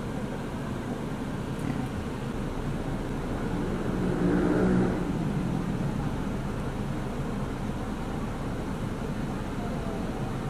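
Steady rumble of a Suzuki Dzire idling while parked, heard inside its closed cabin, with faint muffled voices from outside swelling briefly around four to five seconds in.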